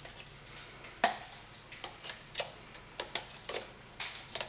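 Scattered sharp clicks and knocks, the loudest about a second in, from a plastic skyr cup and spoon being handled over a glass blender jar of fruit chunks.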